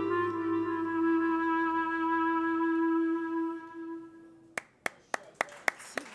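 A clarinet holds the long closing note of a jazz tune over a low synth bass that fades out at once. The note dies away after about three and a half seconds. Near the end, evenly spaced hand claps begin, about three a second.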